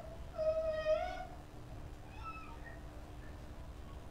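An animal call: one long, slightly rising cry, then a shorter one about two seconds in, over a faint steady hum.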